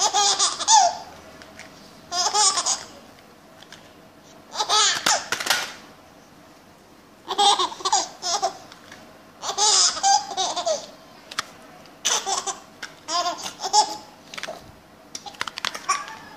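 Baby laughing in repeated bursts of giggles, a fresh burst every two to three seconds.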